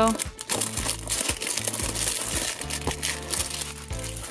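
Crinkling of the plastic wrap on a small cardboard toy blind box as it is handled and unwrapped, in a dense run of irregular crackles.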